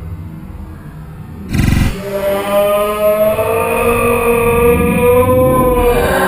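Slowed-down open-hand slap on a bare belly: a deep, drawn-out smack about a second and a half in, followed by a long, slowly sagging pitched cry.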